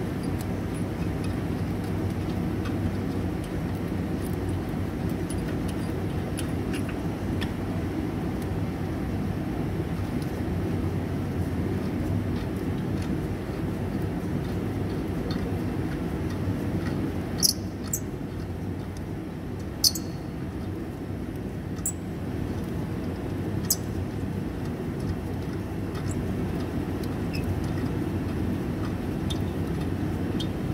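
Steady low background rumble, like running traffic or an engine nearby, with four sharp metallic clicks in the second half.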